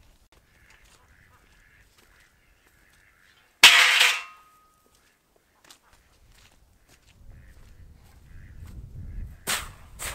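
A single loud, harsh animal call lasting about half a second, a few seconds into otherwise near-silent outdoor air. Near the end there is low rumbling and one sharp knock.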